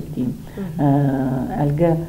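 A woman's voice: short syllables and a long drawn-out hesitation sound, one vowel held at a steady pitch for about a second.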